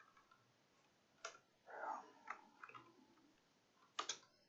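Faint computer keyboard typing: a few separate key clicks, spaced irregularly and mostly in the second half.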